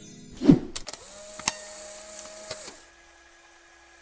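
A thump, then a small electric motor whirring for about two seconds, its pitch gliding up as it starts and down as it stops, with a few clicks along the way. A faint steady hum carries on after it.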